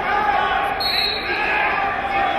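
Crowd of spectators in a gymnasium shouting over one another during a wrestling bout, with a brief high squeak about a second in.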